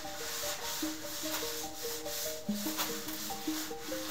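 A cloth rubbing over a leather pouch flap in repeated wiping strokes, about two a second, working dye into the leather. Background music with a simple melody plays throughout.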